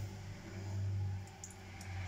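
A steady low background hum that swells briefly about half a second in, with a few faint clicks near the end.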